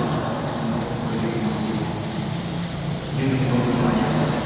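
Speech only: a man giving a religious lecture in Indonesian.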